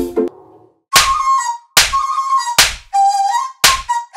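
Background film score: after the earlier music breaks off, four sharp percussive hits come in, about a second apart. Each is followed by a short held whistle-like note, the notes shifting a little in pitch.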